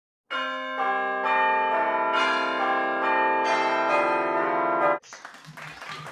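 Short intro music of bell-like chiming notes, a new note coming in every half second or so over the ringing of the earlier ones, cutting off suddenly about five seconds in. Faint room noise follows.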